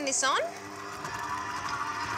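Breville Scraper Mixer Pro stand mixer switched on, its motor starting about half a second in and running steadily as the scraper beater creams butter and caster sugar in the stainless steel bowl.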